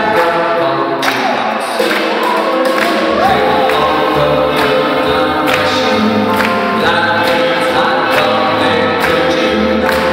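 A swing big band playing, its horn section holding chords over a steady drum and cymbal beat.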